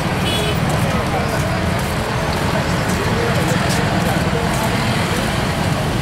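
Steady street noise beside a procession on a busy road: traffic, indistinct talk from the walkers, and a heavy, choppy low rumble throughout.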